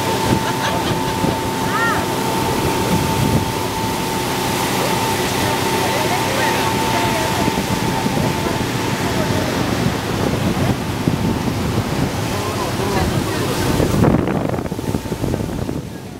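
Motorboat under way: the engine running steadily under the rush of water churning in its wake, with wind buffeting the microphone. A steady whine sits over it for the first ten seconds or so, then stops.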